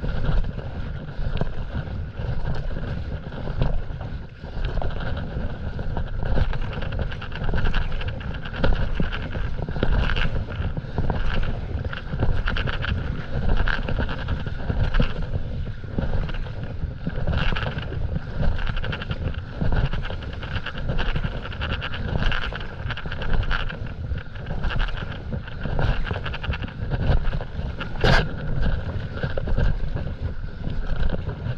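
Wind buffeting a small camera microphone, under the repeated splash and pull of stand-up paddle strokes in the water about once a second. A single sharp click near the end.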